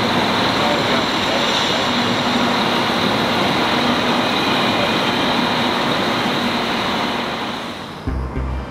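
Irish Rail 22000 Class InterCity diesel railcars idling at the platform: a steady engine hum over a broad rumble, fading out near the end.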